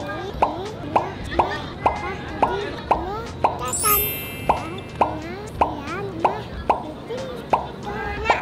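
A rapid, evenly spaced run of short cartoon-style 'plop' sounds, about two a second, each dropping quickly in pitch, with a brief bright shimmer about four seconds in.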